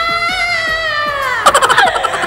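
A loud, long, high-pitched wail like a child's tantrum cry, held and wavering, that breaks into rapid stuttering sobs about one and a half seconds in.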